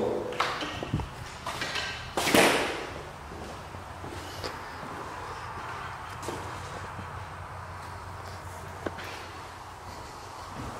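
A few knocks and handling thuds as someone walks across bare concrete floors, with a short rushing noise about two seconds in, then a steady low hum of room noise with occasional faint clicks.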